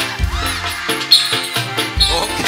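Live band music with a steady beat and heavy bass.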